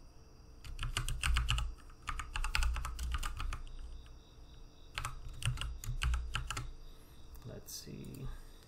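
Typing on a computer keyboard: three runs of quick keystrokes with short pauses between them.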